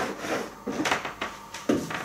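Cardboard boxes being handled and slid along a shelf: a few short scrapes and knocks, the loudest near the end.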